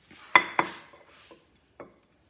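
A white ceramic bowl clinking against a granite countertop as it is handled and set down: two sharp clinks that ring briefly, then two lighter knocks.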